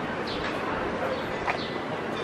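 City street ambience: a steady hum of traffic and people on the sidewalk, with a few short, high-pitched calls over it.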